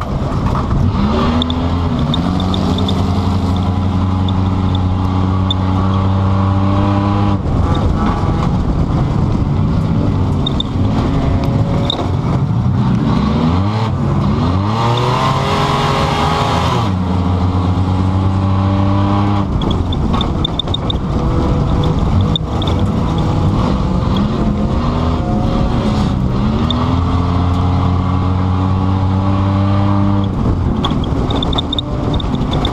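2005 Pontiac Grand Prix's engine heard from inside the cabin, running hard under throttle, its pitch dropping away and climbing back up several times as the throttle is lifted and reapplied. A few seconds of hissing noise about halfway through.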